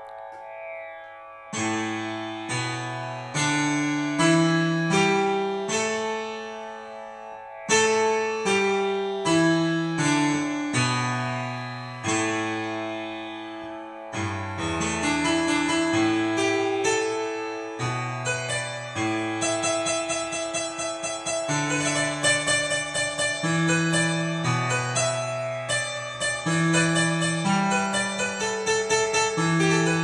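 Yamaha PSR-S670 electronic keyboard playing a Carnatic ragamalika melody, with a lower accompanying line over a steady drone. The notes come in about a second and a half in, in slow phrases at first, then turn quicker and denser about halfway through.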